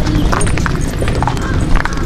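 Footsteps of several people walking on a brick path: irregular sharp clacks over a steady low rumble.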